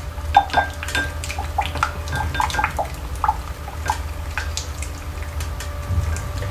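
A utensil stirring melted soap in a glass measuring jug, clinking irregularly against the glass many times.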